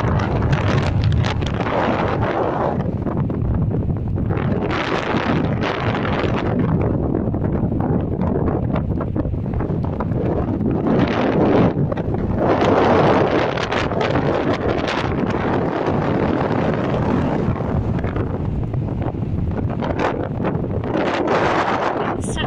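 Strong, blustery wind buffeting the microphone: a loud, continuous rushing rumble that swells in stronger gusts about five seconds in, around twelve to thirteen seconds in, and near the end.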